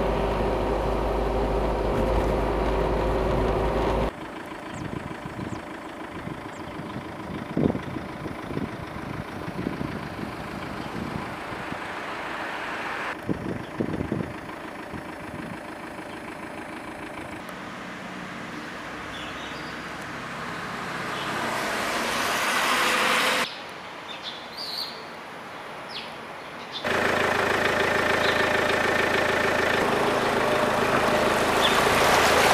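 A car driving on a wet road, heard from inside, with a steady engine and road hum. After a cut about four seconds in, it gives way to outdoor field sound with a few bird chirps.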